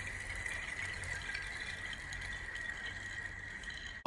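Ice thrown onto a frozen loch skittering across the ice sheet: a faint, steady rattling hiss with a thin high ring held throughout.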